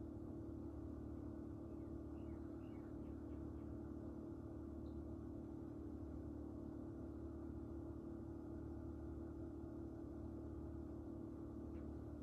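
Steady low hum of room tone, with a few faint high chirps about two to three seconds in.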